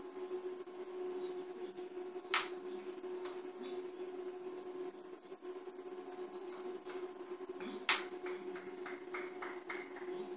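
A light switch clicked twice, about five and a half seconds apart, turning the LED bulb on and then off again, over a steady low hum.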